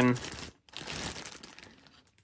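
Thin clear plastic bag crinkling as it is handled, in short rustling spells that fade out near the end.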